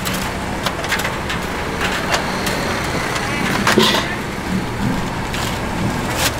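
Busy street-market background of traffic and voices, with sharp clicks and taps of metal tongs picking fried dough pieces and dropping them into a paper bag.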